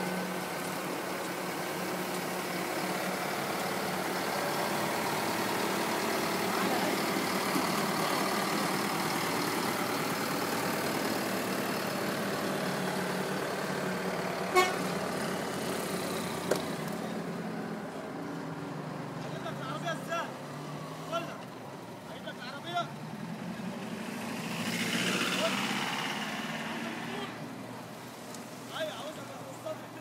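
Caterpillar 950C wheel loader's diesel engine running while it holds a heavy compressor slung from its raised bucket, with people's voices over it. The engine is loud and steady for the first half, then quieter with scattered clicks and a brief swell near the end.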